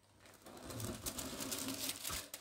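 Faint rustling and scraping of a cardboard box lid being folded open over plastic-wrapped fabric.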